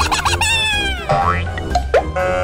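Cartoon sound effects over cheerful children's background music: a few quick springy boings at the start, then a long falling whistle-like glide, and short rising glides later on.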